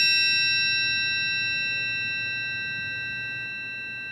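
Metal triangle ringing on after a single strike, a bright tone with several high overtones slowly fading away.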